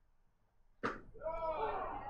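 A baseball smacks into the catcher's mitt about a second in, followed by the home-plate umpire's drawn-out shout calling a strike.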